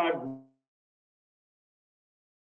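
A man's spoken word trailing off in the first half second, then complete silence, with the audio gated to nothing.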